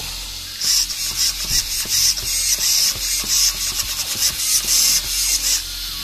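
The slow stock 9 kg steering servo of a VRX Blast BX RC car driving the front wheels back and forth, its gears and motor buzzing in a quick series of short bursts for about five seconds.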